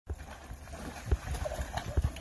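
Dogs splashing and stepping about in a plastic kiddie pool of water: sloshing with irregular thumps of paws on the plastic.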